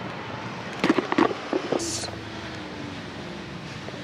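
Riding a rental electric scooter at speed: a steady rush of wind and road noise, with a cluster of sharp knocks and rattles about a second in and a faint, slowly falling whine after them.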